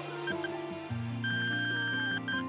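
Background music with sustained chords; a little over a second in, a long, steady electronic beep sounds and runs to the end: the interval timer marking the end of the rest period.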